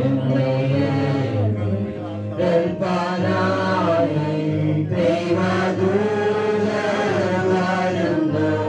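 Slow, chant-like singing in long held notes, gliding from note to note without pause.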